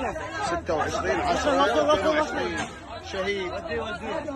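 Several people talking and calling out over one another, the words not made out.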